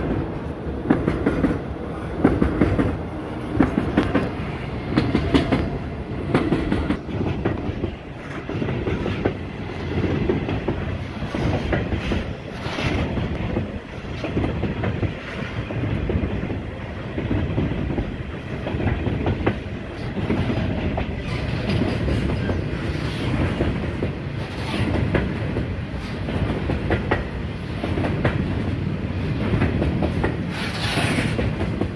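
Long freight train of covered hopper wagons rolling past at speed, its steel wheels clicking over rail joints in a regular clickety-clack as wagon after wagon goes by.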